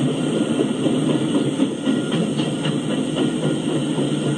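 Freight train of tank cars and covered hoppers rolling past: a steady rumble of steel wheels on rail, with a quick run of sharp clicks in the middle as wheels pass over the rails.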